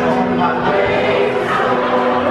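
A large mixed chorus of men's and women's voices singing with held, sustained notes.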